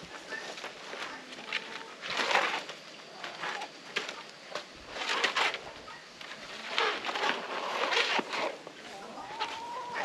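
Chickens clucking and calling, with several short, louder bursts of noise.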